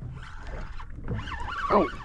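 A man's drawn-out exclamation "oh", gliding up and down in pitch, growing louder in the second half as a fish takes the lure. A low steady background rumble runs underneath.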